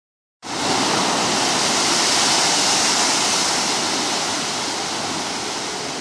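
Sea surge churning as white water in a rock chasm: a loud, steady rush that starts about half a second in and eases slightly toward the end.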